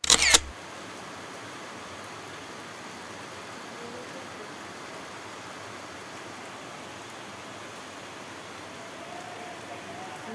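A camera shutter click right at the start, then a steady, even hiss of rain outdoors.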